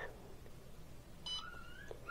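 A single short electronic beep from the Bartlett RTC-1000 kiln controller's keypad as a key is pressed, a little past the middle, with a faint wavering tone around it.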